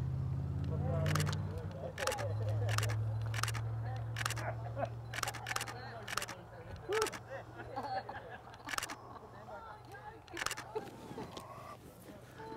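DSLR camera shutter firing about a dozen single shots at irregular intervals, over a low steady hum that fades away.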